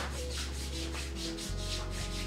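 Hands rubbing sunscreen lotion into the skin of the arms, a quick run of even, repeated friction strokes.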